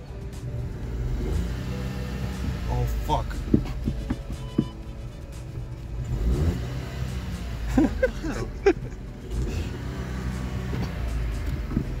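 SEAT car engine running under throttle against a badly slipping, burnt-out clutch: a low drone that swells as the revs rise, while the car barely moves.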